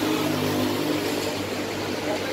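A steady low motor hum that holds one pitch, over a broad background hiss.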